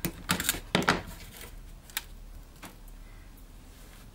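Wire being snipped with pliers: a few sharp clicks in the first second and a half, then a couple of fainter clicks as the pliers are handled and set down on the plastic board.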